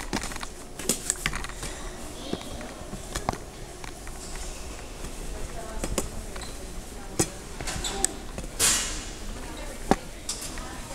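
Footsteps and clicks and knocks from people passing through a metal swing gate, scattered over a steady low hum, with voices in the background. There is a short hiss near the end.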